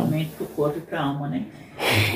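Soft, broken speech from a woman's voice, then a short, sharp intake of breath near the end.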